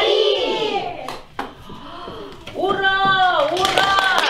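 Children's and adults' voices calling out together in a hall, with drawn-out vowels: a call at the start, a short lull with a sharp knock, then a long held shout near the end.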